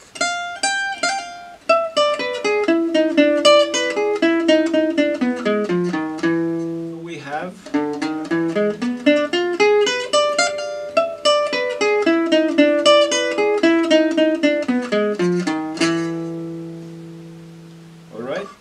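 Selmer-style gypsy jazz guitar played with a pick: a fast single-note E7 lick, run through twice with a short break about seven seconds in. The last note is left ringing and fades out.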